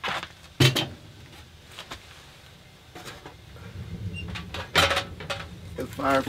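Metal clanks and knocks from a small sheet-metal wood stove as its firebox door is opened to add a log, with a loud clank just after the start, lighter clicks and rustling through the middle, and another loud knock near the end.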